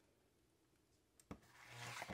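Near silence, then a click about a second in and a faint low hum with light rubbing near the end: a Radio Shack high-power audio/video bulk tape eraser switched on and swiped in contact across a 3.5-inch floppy disk to wipe it.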